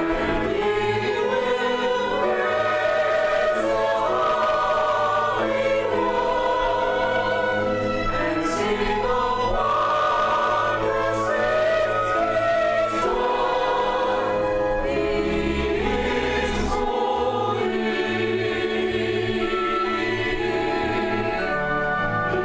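A church choir singing in parts, accompanied by a string ensemble of violins, cello and double bass; held chords that change every second or two at a steady level.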